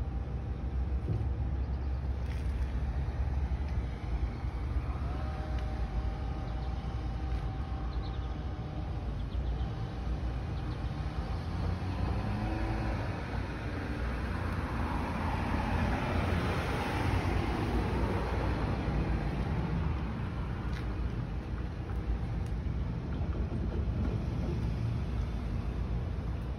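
Street traffic: a steady low rumble of engines, with a vehicle passing in the middle, swelling louder and fading away.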